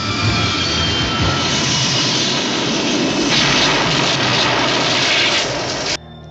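Sound effect of an Eagle transporter spacecraft's engines: a steady, jet-like roar, with a brighter hiss rising over it for about two seconds past the middle.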